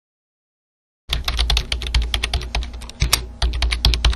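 Rapid typing on a keyboard: a quick, uneven run of clicking keystrokes that starts about a second in, with a short break about three seconds in.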